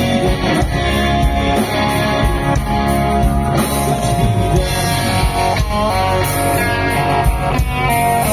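Live rock band playing through a stage PA, with electric guitars over drums and bass, loud and continuous.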